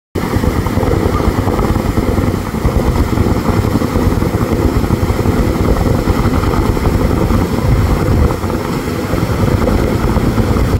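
Hot-spring geyser jetting a tall column of water into the air, a loud, steady, deep rushing noise.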